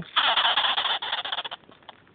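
Sugar glider joey crabbing: one harsh, buzzing chatter lasting about a second and a half. It is the small animal's defensive yell, which the owner thinks it makes because it senses the dog.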